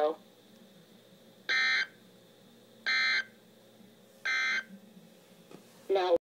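NOAA weather radio's speaker playing the SAME digital data bursts that mark the end of the Required Weekly Test broadcast. There are three short, identical buzzy bursts about a second and a half apart.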